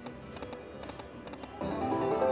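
Aristocrat Buffalo Link slot machine spinning, its music running under a string of short clicks as the reels land. About a second and a half in, a louder, brighter jingle starts, the machine sounding off a small win.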